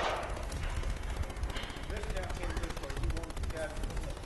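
Steady, rapid crackle: an even run of clicks many times a second from the recording itself, with faint voices in the middle.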